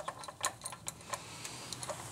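Faint, irregular light metallic clicks and ticks, about a dozen spread over two seconds, from an adjustable wrench being handled.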